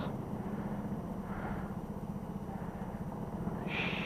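Go-kart engine idling with the kart at a standstill: a steady low hum under the indoor track's background noise.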